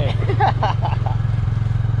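Small motorcycle engine running steadily while the bike is ridden along, a fast, even low pulsing.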